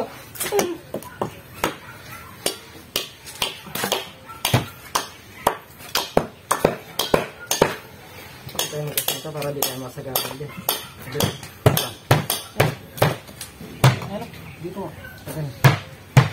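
Irregular clanks and knocks of hand tools (shovels, a steel bar and a hammer) striking soil, wood and steel rebar as workers dig and pry at the base of the columns, at times two or three strikes a second, with faint voices of the crew.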